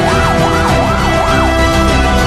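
Emergency vehicle siren in a fast yelp, wailing up and down about three times a second and cutting off about one and a half seconds in, over background music.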